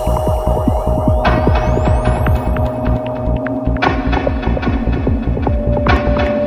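Dark goa trance music: a driving, rapidly pulsing bassline under a held synth tone, with rising synth sweeps in the first half and bright high layers coming in about a second in and again near the middle.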